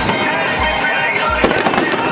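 Aerial fireworks display, shells bursting with deep booms, while music plays at the same time.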